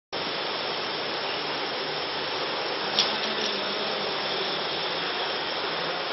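Steady background hiss with one sharp click about three seconds in.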